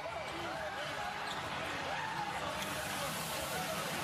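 Indistinct voices and shouts of a celebrating team and staff on a basketball court, a steady background of distant chatter with no single voice standing out.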